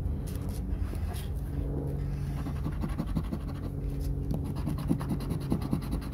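Scratch-off lottery ticket being scratched, its coating rubbed off in quick, repeated short strokes that start about halfway through. A steady low hum runs underneath.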